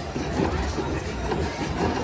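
Casino floor din: a steady mix of distant voices and slot-machine sounds under a low rumble.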